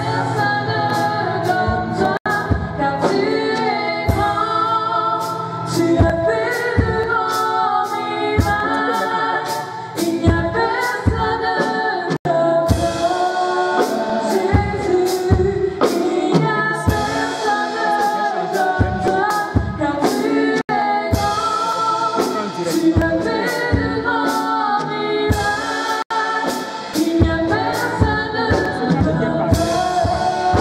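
Gospel worship song: voices singing over an instrumental backing with a steady beat about twice a second.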